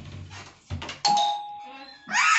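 A doorbell chime rings once about a second in, a single steady tone that fades away. Two dull thumps come before it.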